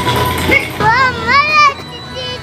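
A young girl's high-pitched voice calling out in excitement: two rising-and-falling calls about a second in.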